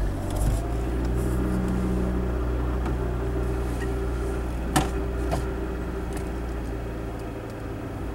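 Manual-transmission car's engine running as the car pulls away and drives, heard from inside the cabin as a steady low hum. A sharp click sounds almost five seconds in, with a fainter one just after.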